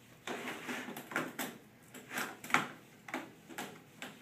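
A cat pawing and pushing at the wire door of a plastic pet carrier, rattling the metal grille in a string of sharp clicks, about two a second, the loudest about two and a half seconds in.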